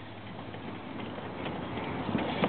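Quiet handling noise with a few light clicks: fingers working a small white two-pin plastic wiring connector loose in a riding mower's safety-switch harness.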